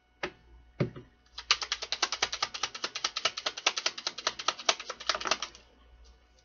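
A deck of tarot cards handled and shuffled by hand: two knocks in the first second, then about four seconds of quick card flicks, roughly ten a second, before it stops.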